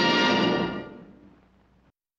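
Orchestral film music ending on a held chord that fades away over the second half.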